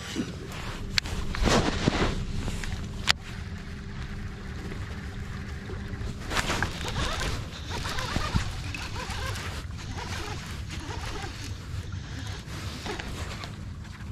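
Outdoor wind and water rumble on an action-camera microphone with scattered clicks and knocks of rod-and-reel handling on a bass boat. A faint steady hum runs from about a second in to about six seconds in, and there is one sharp click about three seconds in.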